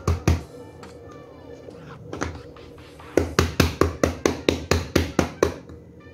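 A hand tapping the bottom of an upturned aluminium ring cake pan to knock a freshly baked cake loose. There are a few taps at the start, then a quick run of about a dozen, roughly five a second, from about three seconds in.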